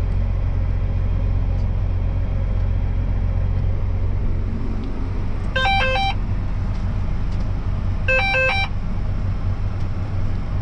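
Self-propelled sprayer's engine running steadily, heard from inside the cab as a low drone. About five and a half seconds in, and again about two and a half seconds later, a short electronic chime of stepped beeps sounds.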